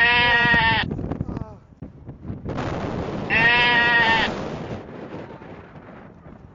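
Two loud sheep bleats, one at the start and another about three seconds later, each lasting under a second at a steady pitch. A rush of noise runs under the second one.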